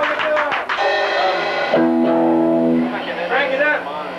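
Live rock band of electric guitars, bass and drums with vocals, ringing out on a long held chord about halfway through. A steady low tone of amplifier feedback then hangs on near the end.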